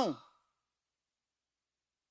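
Near silence: the last fraction of a man's spoken word fades out at the very start, then the sound drops to nothing, gated to dead silence.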